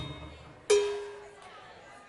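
The fading tail of a loud band hit, then about two-thirds of a second in a single sharply struck instrument note that rings with one clear pitch and fades out over about a second.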